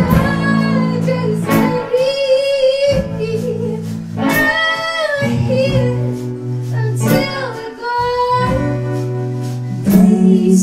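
Live acoustic band performing a slow song: strummed acoustic guitars holding chords under a woman singing long, gliding held notes that come and go, with light percussion ticking in the background.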